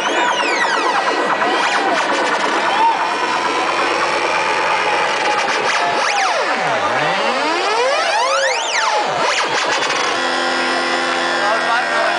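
Live electronic music played loud over a festival sound system and picked up from the crowd: layered synthesizer tones sweeping up and down in pitch, with one deep sweep falling and rising again past the middle, and steady held tones near the end, with no clear beat.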